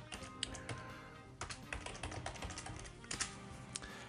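Computer keyboard keys clicking in an irregular run as a password is typed, with soft background music underneath.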